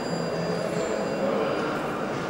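Steady background noise of a large indoor exhibition hall: an even low rumble with no distinct events.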